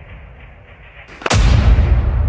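Cinematic boom sound effect: a brief rising whoosh leads into a sharp hit about a second in, followed by a deep booming rumble that slowly dies away.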